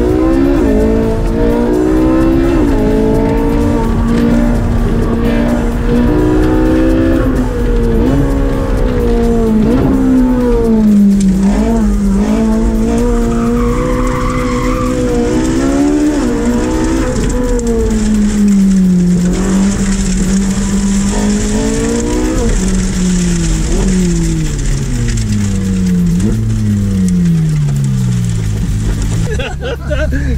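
Ferrari 458 Speciale's V8, heard from inside the cabin, driven hard, its revs climbing and dropping again and again through the gear changes, then falling in a series of steps near the end. Tyres squeal briefly about halfway through.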